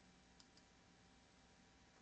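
Near silence with a faint steady room hum and two faint computer mouse clicks close together about half a second in.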